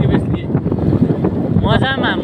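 Wind buffeting the microphone on a moving motorcycle, a steady loud rush over the low rumble of engine and road noise. A voice calls out briefly near the end.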